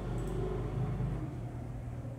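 Steady low background hum, with a couple of faint, brief high clicks.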